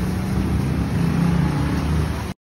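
A car engine running steadily nearby, a low even hum over a rumbling noise.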